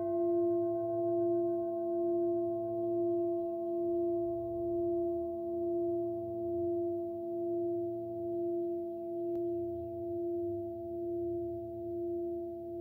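A large brass singing bowl, struck just before, ringing on in a sustained tone with fainter overtones, its loudness wobbling slowly about once a second as it fades very gradually.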